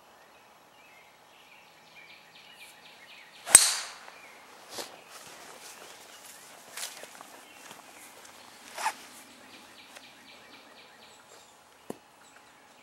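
Golf driver striking a teed ball: one sharp crack about three and a half seconds in, the loudest sound, with a short ringing tail. Three fainter sharp clicks follow over the next five seconds, over faint rhythmic high chirping.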